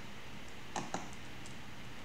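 Computer keyboard keys clicking faintly: a quick cluster of three keystrokes just under a second in, over steady low room noise.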